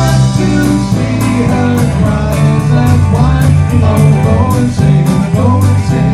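Live band playing a rock song: electric guitar, bass and keyboards over a steady drum beat, loud and dense throughout.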